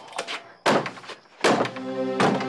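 Knocking on a wooden door: two loud bangs under a second apart, with a lighter knock just before them. Music comes in with the second bang.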